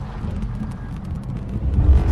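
Logo-intro sound effect: a deep, continuous rumble with a spray of crackling clicks over it, swelling louder near the end.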